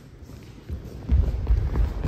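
Low, irregular thuds of footsteps on a hollow plywood skate ramp, starting about a second in as a person walks across the ramp floor.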